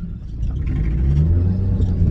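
Car engine heard from inside the cabin, pulling away and growing louder as it accelerates, with a deep rumble from an exhaust that has a small hole in it.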